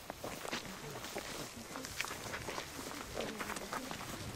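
Footsteps of a group of people walking on a dirt path: many irregular, overlapping short steps.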